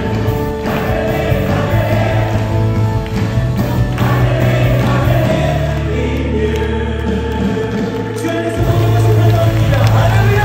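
Live worship music: a congregation singing a praise song together with a band. Held bass notes run underneath, changing pitch about halfway through and dropping out briefly near the end.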